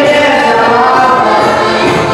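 Dance music from a Polish courtyard band (kapela podwórkowa), with several voices singing together over the instruments.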